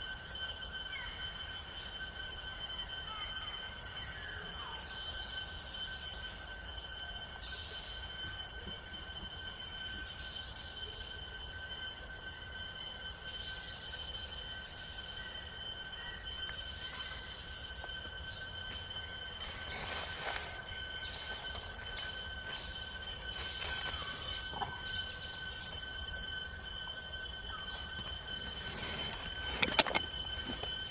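Insects droning in the forest: a steady, high-pitched shrill tone that holds one pitch throughout. Faint short squeaks or chirps sound over it now and then, and a few sharp clicks come near the end.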